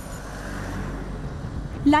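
Street traffic: a low motor-vehicle rumble that swells about half a second in and then holds steady.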